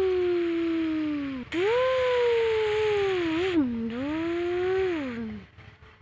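A person's voice imitating a truck engine with two long hums: the first slides slowly down in pitch, and the second rises, wavers and falls away about a second before the end.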